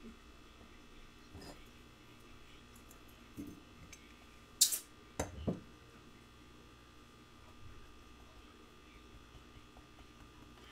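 Low room hum with brief handling sounds from things being moved on a jeweler's workbench: a short bright scrape about halfway through, then two light knocks.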